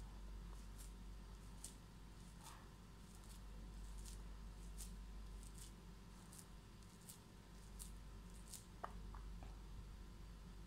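Faint, scattered crackle of a crumbly semolina (rava) laddu mixture being pressed together in a bare hand to shape a ball, with a few sharper clicks near the end.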